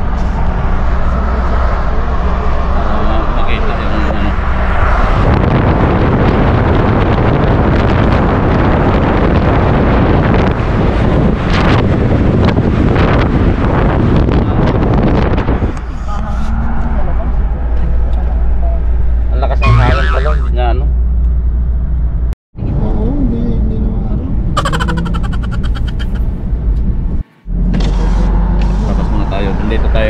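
Road and engine noise of a moving pickup truck, heard from inside the cabin: a loud, steady low rumble with voices now and then. It drops out twice for a moment in the last part.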